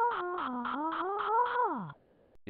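A synthesized musical tone, pulsing about five times a second, dips in pitch, climbs back and then slides down steeply near the end.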